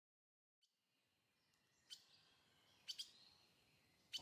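Near silence with a few faint, short, high bird chirps: one about half a second in, one near two seconds, and a quick pair around three seconds.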